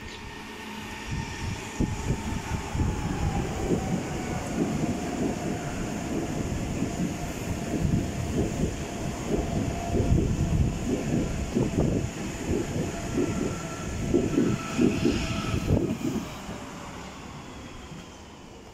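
A Berlin U-Bahn small-profile train runs past close by over the tracks and points, its wheels clattering over the rail joints. A motor whine falls in pitch over the first few seconds, and the train is loudest as it passes about halfway through.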